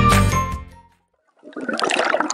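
Background music with chiming notes fades out within the first second. After a short silence, a rushing, water-like burst of noise starts near the end.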